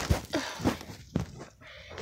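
Handling noise: a few soft thumps and knocks, with a little rustling, as a phone camera and a bubble-wrapped package are moved about.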